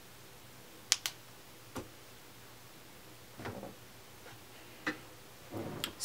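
Snap clips of a clip-in hair extension weft clicking shut in the hair: a few short sharp clicks, two about a second in, one near two seconds and more near the end, with soft rustling of hair in between.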